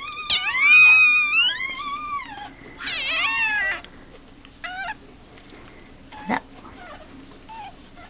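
Newborn Mame Shiba puppy crying in high-pitched squeals: a long, wavering cry over the first two seconds, a louder cry about three seconds in, then a few short, faint squeaks.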